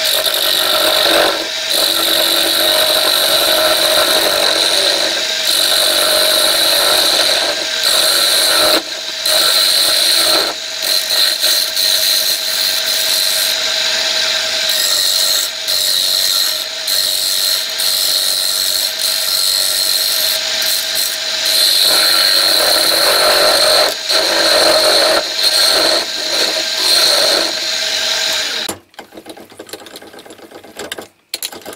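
A turning tool cutting a spinning piece of carrot wood on a wood lathe: a continuous shearing hiss over the lathe's steady hum, broken by a few short gaps as the tool comes off the wood. The cutting stops shortly before the end.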